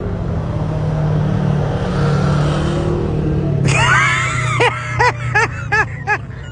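A vehicle engine running steadily, then revved in about four quick blips near the end, its pitch jumping up and falling back each time.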